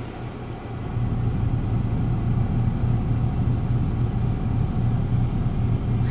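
Steady low hum of a car's idling engine heard inside the cabin, growing a little louder about a second in.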